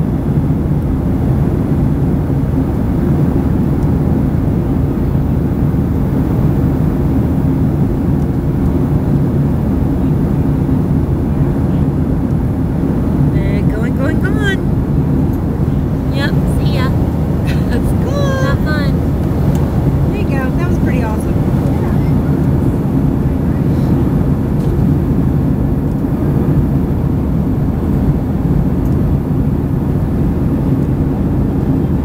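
Steady drone inside an airliner cabin in flight: engine and airflow noise with a low, even hum. Faint voices come through it partway through.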